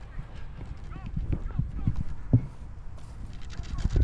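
Wind rumbling on the microphone, with scattered light knocks from handling the plastic airframe; the loudest knock comes a little past halfway.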